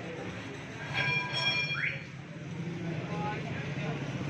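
A vehicle horn sounds for about a second, a steady high note, followed by a short rising tone. Underneath runs the low, steady sound of small engines in street traffic.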